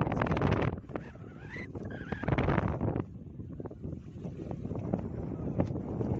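Wind buffeting the microphone on a small fishing boat at sea, with the boat and water noise underneath; loud in the first second, dropping, then swelling again midway.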